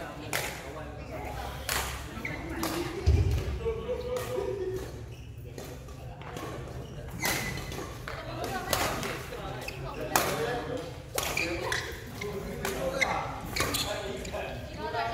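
Badminton rally: sharp smacks of rackets hitting a shuttlecock every second or two, with a heavier thud about three seconds in, over voices in a large hall.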